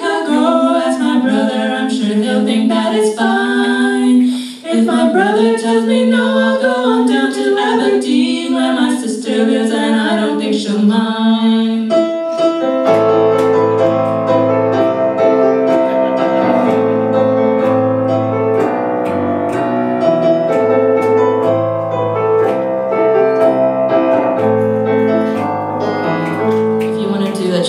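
A song played on a stage keyboard in piano voice, with a woman singing over it for the first twelve seconds or so; then the voice stops and the keyboard carries on alone with steady chords over a bass line.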